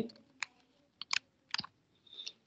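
A few separate keystrokes on a computer keyboard, with short pauses between them, as a line of code is typed.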